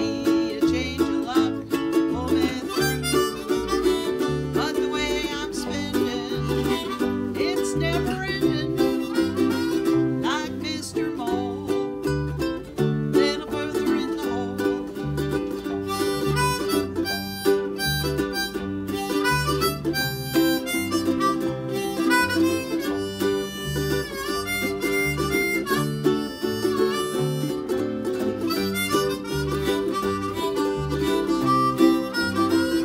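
A blues harmonica plays a lead line, some notes sliding in pitch, over strummed ukuleles and a plucked bass line.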